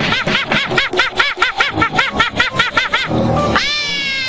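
A cartoon monkey's high-pitched rapid hooting laughter, about five rising-and-falling calls a second, over background music. Near the end it breaks off and a long tone starts that slides slowly downward.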